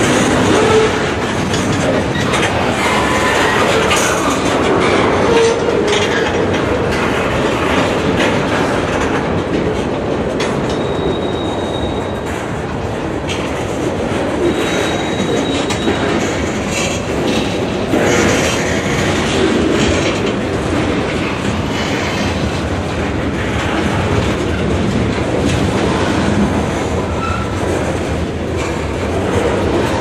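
Freight train cars (tank cars, a boxcar and covered hoppers) rolling steadily past close by: a continuous rumble of steel wheels on rail, with clacking as the wheels cross rail joints. A thin, high wheel squeal comes in briefly twice near the middle.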